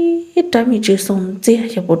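A person's voice: a steady hummed note held until about a third of a second in, then quick, choppy voiced phrases like speech or chanting.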